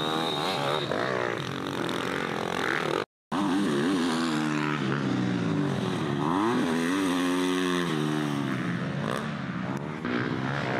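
Off-road dirt bike engines revving up and down hard under throttle as they ride through sand. A sudden brief dropout to silence comes about three seconds in.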